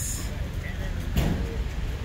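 Outdoor street background: a low, steady rumble of road traffic, with a faint voice a little after the middle.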